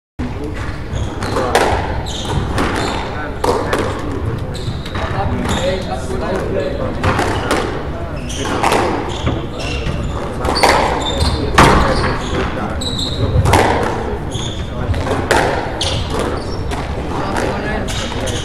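A squash rally: sharp knocks of the racket and ball against the walls and floor, roughly once a second, with short squeaks of court shoes on the wooden floor. Voices chatter in the background of a large, echoing hall.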